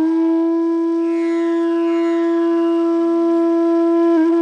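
Flute in the intro music holding one long steady note.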